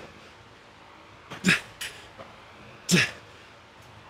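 A man grunting with effort during a set of dumbbell curls: short, strained voiced exhales, each falling in pitch, about one every second and a half, one per rep.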